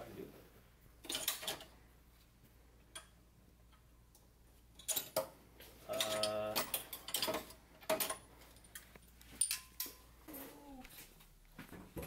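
Metal sockets clicking and rattling as they are taken off a socket rail in a tool chest drawer, in scattered sharp clicks. A short voice-like hum comes about six seconds in.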